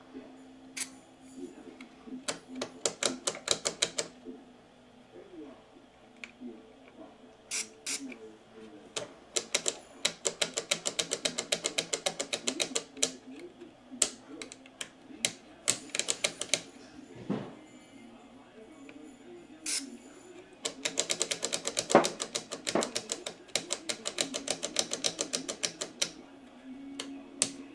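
Plastic slide selector switch on a radio being flicked rapidly back and forth through its positions, clicking several times a second in four runs. The switch, stiff with dirt, is being worked in after a spray of DeoxIT D5 contact cleaner.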